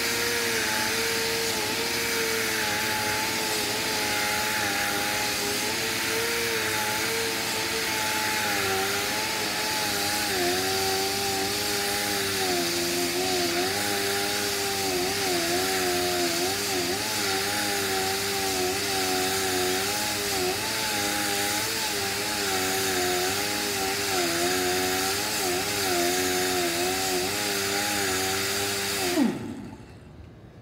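Pneumatic right-angle grinder with a buffing disc grinding sheet-metal paint: a steady whine over a hiss of air. The pitch wavers and dips as the disc bogs under load, kept at low speed to avoid heat buildup and warping the panel. Near the end the whine drops in pitch and stops as the tool is released and lifted off.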